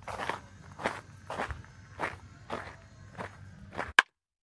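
Footsteps crunching on a gravel path at an easy walking pace, about seven steps, one every half second or so.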